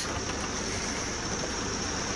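Steady rain falling on a caravan, heard from inside as an even, unbroken noise.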